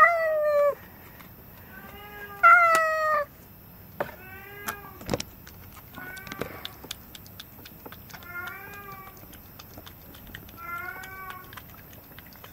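Domestic cat meowing repeatedly, each meow falling in pitch: two loud meows at the start and about two and a half seconds in, then fainter meows every two seconds or so.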